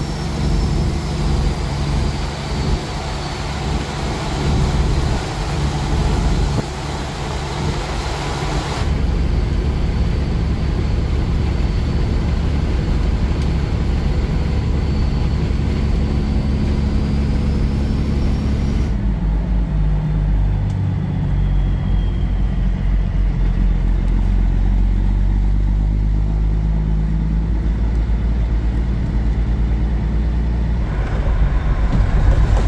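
Semi truck's diesel engine running with road noise, heard from inside the cab. The sound changes abruptly twice, about 9 and 19 seconds in, the engine tone shifting each time.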